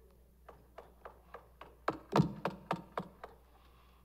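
A rapid run of about a dozen knocks on wood, roughly four a second, like someone knocking at a door; one knock a little past halfway is louder than the rest.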